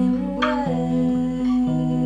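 Acoustic guitar playing held chords under a woman's soft wordless vocal, a hummed phrase that rises and falls about half a second in.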